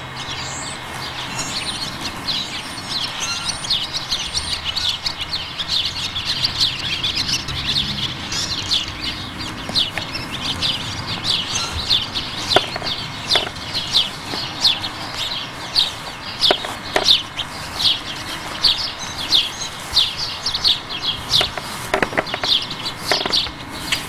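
Birds chirping: a steady run of short, high chirps, repeating several times a second and more regular in the second half. A few sharp knocks come through near the middle and near the end.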